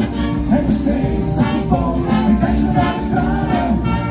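Brass band playing an upbeat tune live, trumpets over a steady percussion beat.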